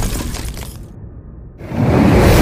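Intro sound effects. A crackling shatter fades away over the first second, then a whoosh swells up sharply near the end.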